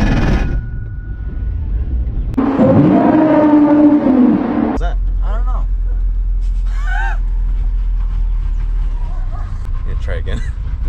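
Mazda Miata running, heard from inside the cabin as a steady low rumble, with a louder held tone between about two and a half and five seconds in and two short chirps after it.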